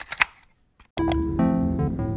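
Two sharp mechanical clicks of a stereo deck's play button being pressed, then a brief near-silent gap before music starts about a second in.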